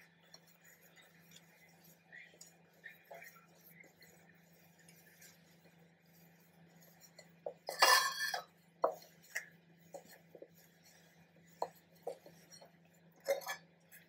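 Hands rubbing flour and melted butter together in a ceramic bowl: near silence at first, then a brief clatter about eight seconds in and several light clinks and knocks against the bowl.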